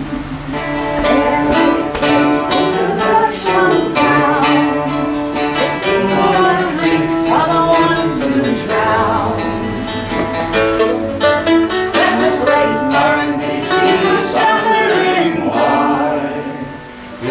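A woman and a man singing a folk song together, accompanying themselves on mandolin and archtop acoustic guitar with steady strummed chords.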